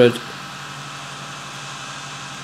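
Steady background hum and hiss with a faint steady whine, after a spoken word ends right at the start.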